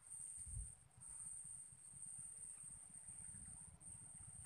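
Near silence: faint, uneven low rumble of wind on the microphone under a steady, thin high-pitched whine.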